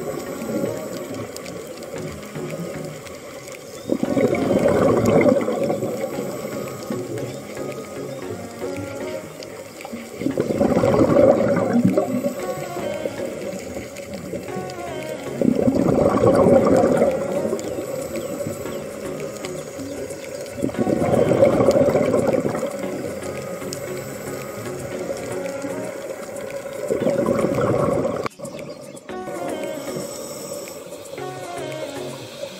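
Scuba diver breathing through a regulator underwater: bursts of exhaled bubbles about every five to six seconds, each lasting a second or two, with background music underneath.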